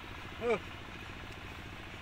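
An engine idling steadily in the background, with a fine regular pulse. One short spoken word comes about half a second in.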